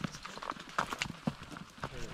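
Footsteps on a dry dirt and stone trail: irregular crunching and clicking steps, a few a second.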